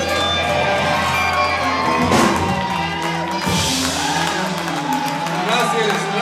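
A live psychedelic rock band with electric guitars, bass and drums holding out a closing chord, with a sharp crash about two seconds in. The audience cheers and whoops toward the end.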